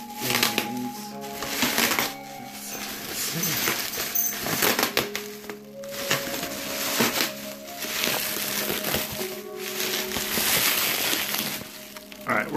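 Exceptionally loud crinkling and crackling of a foil-lined insulated refrigeration bag being handled and pulled open, in bursts with short lulls.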